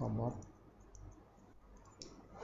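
Barber's hair-cutting scissors snipping through hair: a scatter of faint, quick clicks.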